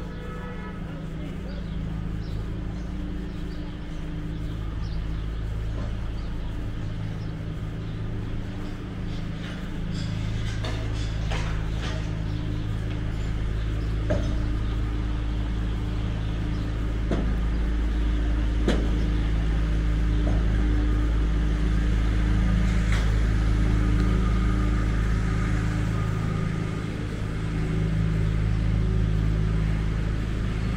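Steady low hum of a parked truck's engine idling, growing louder over the first twenty or so seconds and dipping briefly near the end, with a few scattered knocks of street noise.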